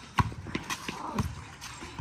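A ball struck hard once just after the start, followed by a quick patter of children's footsteps running on pavement, with a brief shout about the middle.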